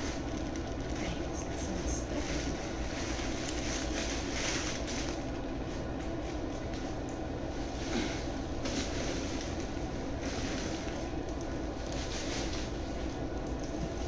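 Tissue-paper stuffing rustling in bursts as it is handled and pulled out of a tote bag, over a steady low hum.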